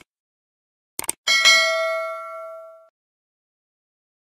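Two quick click sound effects, then a single bright bell ding that fades out over about a second and a half: the stock sound of an animated subscribe button being clicked and its notification bell ringing.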